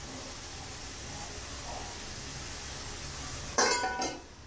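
A steel lid is set down on a steel pan of chicken and green chillies with a sharp, ringing metallic clink near the end. Before it, a faint steady sizzle comes from the pan over its small gas flame. The pan is being covered to braise because the flame is too weak to stir-fry.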